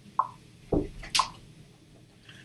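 Three short, wet-sounding clicks or pops about half a second apart, the last one hissier and higher.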